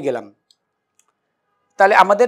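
A man's speaking voice trails off, then a gap of near silence broken by two faint clicks about half a second apart, and speech starts again near the end.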